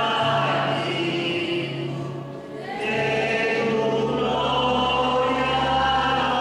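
A group of voices singing together in a slow, sustained religious song, the phrase pausing briefly a little past two seconds in before the singing resumes.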